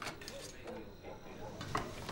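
Faint voices murmuring in a kitchen, with a sharp clink of a knife on a plate at the start and another light knock near the end.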